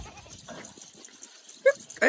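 A single short, high animal cry near the end, over otherwise faint background.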